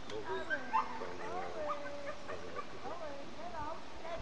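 A dog whining and yipping in short, rising and falling calls, with one longer held whine a little over a second in, over the murmur of people's voices.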